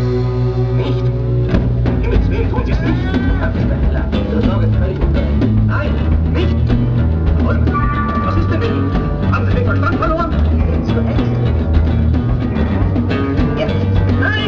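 Live band playing loud music: a low bass line moving in steps, keyboard sounds with gliding pitches, and drums.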